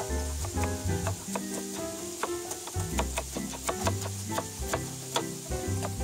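A chef's knife chopping carrots on a wooden cutting board, a series of short sharp chops at uneven intervals, over background music.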